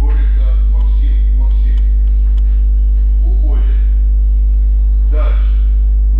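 Loud, steady electrical mains hum at a constant low pitch. Faint voices come and go over it in short stretches.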